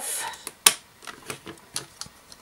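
LEGO bricks clicking as a section of a brick-built road is pulled apart: one sharp click about two-thirds of a second in, then a few softer clicks.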